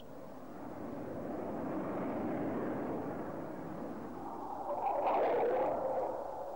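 Jet fighters flying past in formation: a rushing jet-engine noise that builds over the first two seconds, eases off, then swells louder about five seconds in before fading.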